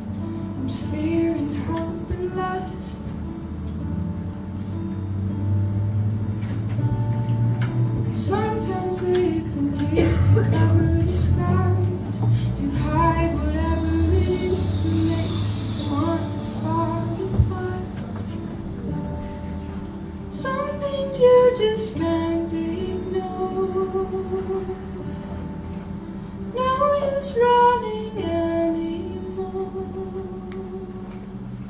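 A woman singing in phrases while playing an acoustic guitar.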